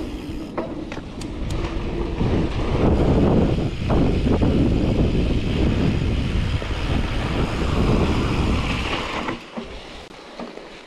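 Wind buffeting the microphone of a mountain bike's camera, mixed with tyres rolling over a dusty dirt trail and the bike rattling on a fast descent, with a few sharp clicks in the first couple of seconds. The noise falls away about nine seconds in as the bike slows to a stop.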